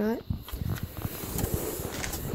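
Rustling and crinkling of packaging, with small ticks and crackles, as things in a packed cardboard box are handled.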